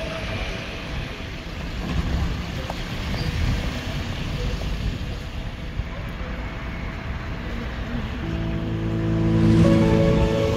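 Steady outdoor background noise with a low rumble, with background music of held notes coming in a little after eight seconds and growing louder near the end.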